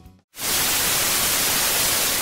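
Music fades out, and after a short gap a steady TV-static hiss starts about a third of a second in: a white-noise sound effect laid under a picture of a snowy, untuned screen.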